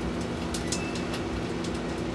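Microwave oven running: a steady low hum with a few faint clicks.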